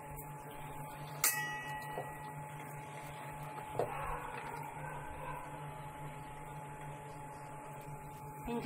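Steady low machine hum with a steady tone above it. A sharp clink that rings briefly comes just over a second in, and a softer knock near four seconds.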